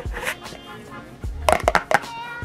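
Background music with a steady tune. About one and a half seconds in comes a quick cluster of sharp clicks and knocks as plastic hair-product jars and their screw lids are handled.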